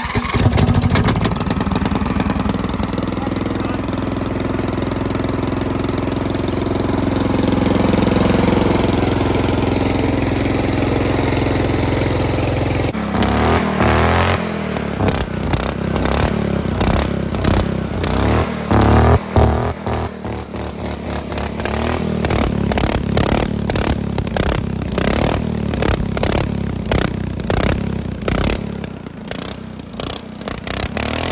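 Riding lawn mower's 14.5 hp OHV engine, exhausting through a motorcycle-style muffler canister, running just after being started. It runs steadily for about 13 seconds, then turns choppy and uneven with rapid pulses from the exhaust.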